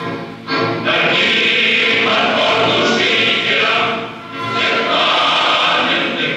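Recording of a choir singing, coming in loudly at the start, with a short dip between phrases about four seconds in.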